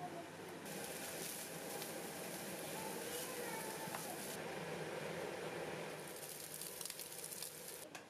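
Minced meat and onions sizzling in a frying pan as they are stirred with a wooden spoon, with crackles through the frying. The sizzle drops away briefly about halfway through, then returns.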